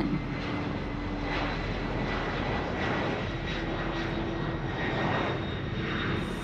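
Lockheed C-5 Galaxy's four turbofan engines at takeoff power as the aircraft climbs out after lift-off: a steady, dense jet engine noise.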